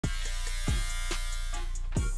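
Electric hair trimmer buzzing steadily, over music with a beat of deep, falling-pitch drum hits.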